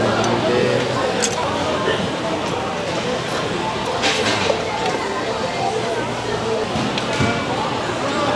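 Long hotteok frying in oil on a flat griddle, with clicks of metal tongs as they are turned and a brief burst of hiss about four seconds in, under steady indistinct crowd chatter.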